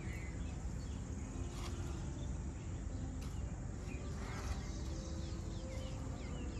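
Outdoor ambience: small birds chirping faintly here and there over a steady low rumble, with a couple of light clicks.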